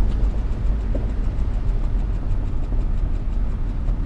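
Steady low rumble of engine and road noise heard from inside the cabin of an older car cruising along.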